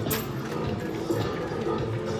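Music with long, steady held notes, played through a street performer's loudspeaker.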